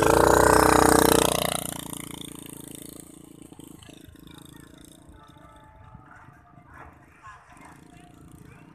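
KXD 50 cc mini dirt bike's small two-stroke engine revving as the bike pulls away, loud at first and then fading over the next few seconds as it rides off into the distance.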